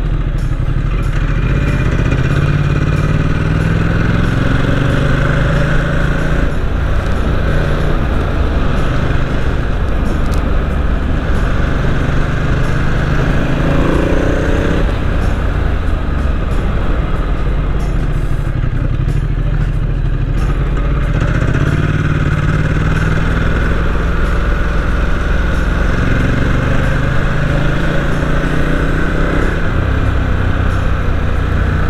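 Ducati XDiavel S's 1262 cc Testastretta V-twin engine pulling the bike up from about 30 to 70 km/h. Its pitch climbs and drops back at each gear change, several times, over steady wind rush.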